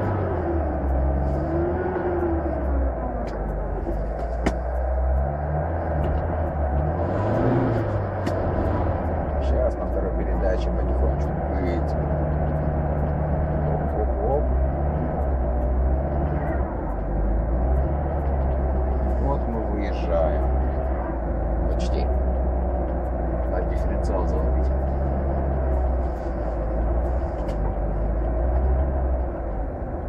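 Carburetted car engine heard from inside the cabin, running with the choke pulled, its revs rising and falling a few times. It is running roughly on suspect 80-octane petrol: it tends to stall, and the valves knock, which the driver blames on the fuel.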